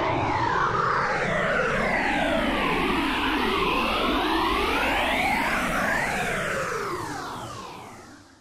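Synthesized logo-intro sound effect: many tones sliding up and down across each other over a low rumble, fading out over the last two seconds.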